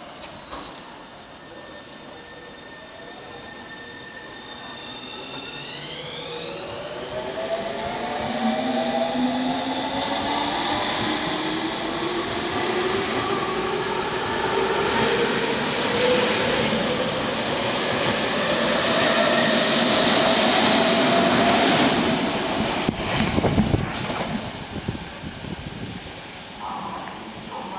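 Tobu 30000 series electric train pulling out, its VVVF inverter and traction motors whining in several tones that climb steadily in pitch as it accelerates, with the high inverter tone stepping up in jumps early on. The sound grows louder as the cars pass close by, then cuts off sharply near the end.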